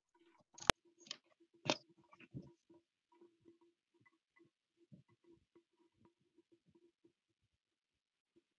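Faint handling noise over a video call: one sharp click a little under a second in, then a few short soft rustles and knocks, over a faint low tone that keeps cutting in and out.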